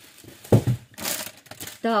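Plastic bubble-wrap packaging crinkling as a hand rummages in a cardboard box, with a short knock about half a second in.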